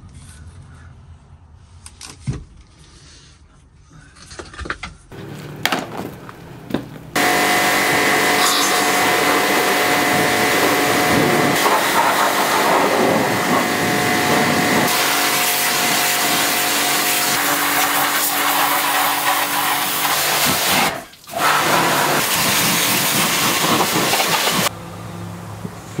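A cleaning machine's motor running steadily with a loud rushing hiss and a steady whine in it. It starts abruptly after a few seconds of scattered clicks and knocks, cuts out briefly about three-quarters of the way through, and stops near the end.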